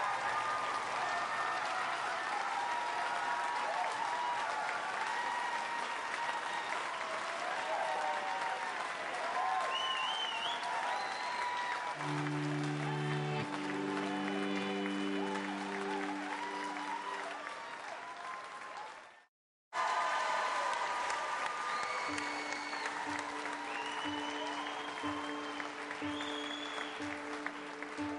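Studio audience applauding, with cheers and whistles. From about twelve seconds in, steady held musical notes start underneath. The sound cuts out completely for a moment about two-thirds of the way through.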